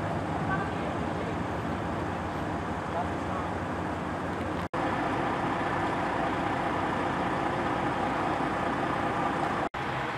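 Steady rumble of vehicle engines and roadway traffic with faint voices under it, cut off for an instant twice, about halfway and near the end.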